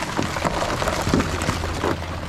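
Pile of live blue crabs scrabbling in the bottom of a pirogue: a dense patter of clicks and scrapes from legs and claws on the hull, over a low steady rumble.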